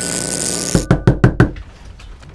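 Someone knocking on a front door: a quick run of about five sharp knocks about a second in. Before the knocks there is a loud steady hiss that stops as they begin.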